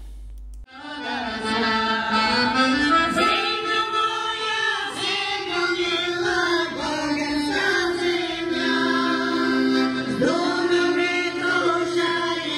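A choir of older women singing a folk song in long held notes, accompanied by an accordion, starting just under a second in.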